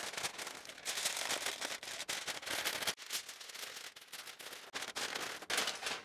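Large sheet of aluminium foil crinkling and crackling as it is pulled over and tucked around a turkey in a roasting tin.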